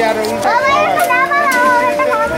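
Several children's voices calling and shouting over one another, high-pitched, with long held and gliding calls.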